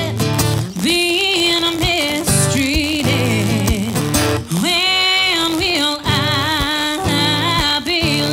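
A woman singing a country song live with her own acoustic guitar accompaniment: long held notes with vibrato over strummed chords, in phrases with short breaths between them.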